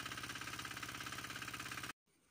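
Weima walk-behind tractor engine running steadily with an even, fast beat, stopping abruptly near the end.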